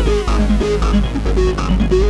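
Electronic trance/techno track played on synthesizers: a deep steady bass, short repeating synth notes, and a falling synth sweep that fades out about half a second in.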